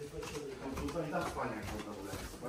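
Indistinct voices of people talking quietly, low and murmured.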